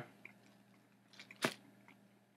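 Mostly quiet, with faint chewing of a thin, bone-dry oatmeal raisin cookie and one short, sharp noise about one and a half seconds in.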